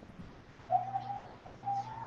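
A man's hesitant 'mm' humming while he thinks over a question, twice: once about a second in, and again near the end, running into speech.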